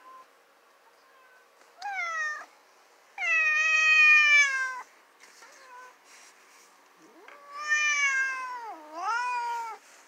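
Domestic cat meowing four times. A short falling meow comes about two seconds in, then a long drawn-out meow that is the loudest. Two more follow near the end, the last dipping down and back up in pitch.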